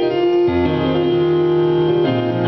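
Piano playing sustained gospel chords in E flat, with a low bass note coming in about half a second in under the held chord.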